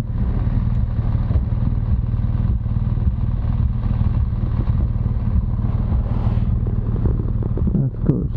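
BMW R1200GS Adventure motorcycle's boxer-twin engine running steadily at low revs in slow traffic, heard from the rider's position with some road and wind noise over it.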